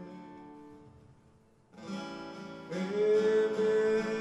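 Live acoustic band music: held notes ring out and fade almost to silence, then acoustic guitar strumming starts up again about halfway through, and a singer comes in with a long held note near the end.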